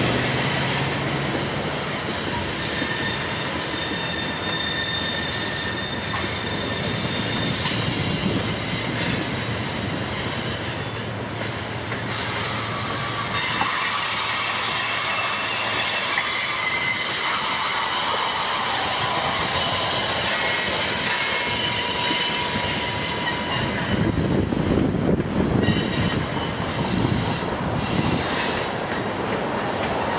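Freight train of covered hopper cars rolling around a curve, its wheels squealing in steady high tones over the rumble of the cars. The rumble grows louder in the last few seconds.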